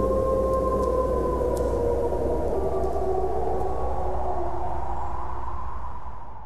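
Wolves howling: long, slowly gliding calls that overlap, one falling and another rising, over a steady low drone.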